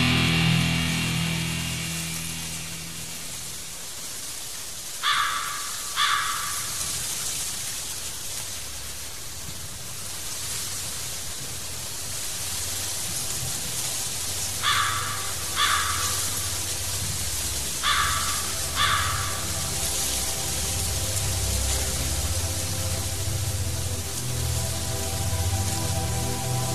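A heavy black metal passage fades out over the first few seconds into an ambient interlude. A steady hiss of rain runs over a low drone, and a crow caws twice, three times over: about five, fifteen and eighteen seconds in.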